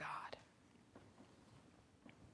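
A spoken word ends with a breathy tail, then near silence with a few faint ticks and rustles of paper being handled at a lectern.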